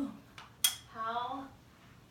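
A single sharp click of the extended mop pole knocking against the wall about half a second in, after a fainter tap. Brief wordless vocal sounds come before and after it.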